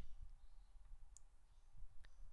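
Faint computer mouse clicks, one about a second in and another near the end, over a low steady hum.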